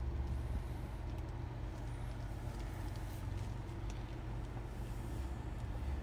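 Steady low hum inside the cabin of a Chery Tiggo 8 SUV, its engine idling with the air conditioning running.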